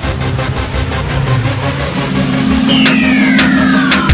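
Electronic background music building up, with a steady low held note in the second half and a falling synth sweep near the end.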